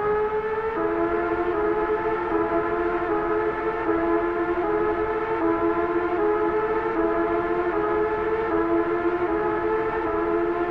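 A sustained, siren-like drone of two low notes held together with a stack of higher tones above them, steady in level with only slight shifts in pitch. It starts abruptly and plays as the intro of a hip-hop track.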